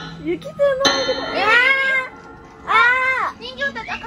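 A bell-like chime strikes about a second in and keeps ringing. Then come two short, high cries, each rising and then falling in pitch.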